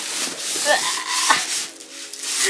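Cardboard box and styrofoam packing scraping and rustling as a boxed mini fridge is pulled up out of its carton by a handle, with a sharp knock about a second and a half in.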